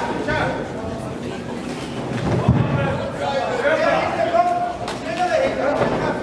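Voices of coaches and spectators calling out in a large sports hall during an amateur boxing bout, with a few sharp thumps from the ring near the middle.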